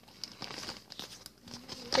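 Plastic packaging crinkling as it is handled, in short irregular rustles.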